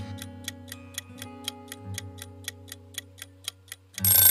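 Quiz countdown-timer sound effect: an even, rapid clock-like ticking, several ticks a second, over steady held tones beneath.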